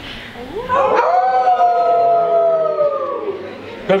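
A group of people howling in imitation of wolves. Several voices glide up together about half a second in into one long held howl, which sinks and fades a little after three seconds.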